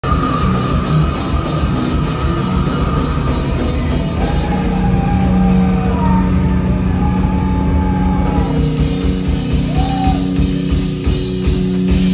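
Live rock band playing loud on stage, electric guitar and drum kit, with long held notes from about four seconds in.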